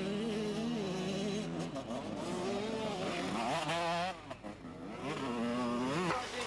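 Enduro dirt bike engine revving hard across a muddy field, its pitch rising and falling as the rider works the throttle. It drops off briefly a little after four seconds, then picks up again.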